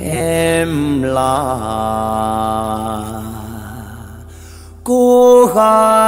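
A singer in the free, drawn-out style of Nghệ Tĩnh folk song holds long notes with slow bends in pitch over a quiet sustained backing. The first note fades away, and a loud new phrase starts about five seconds in.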